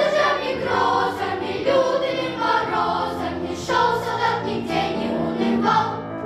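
Children's choir singing, a run of held, changing notes.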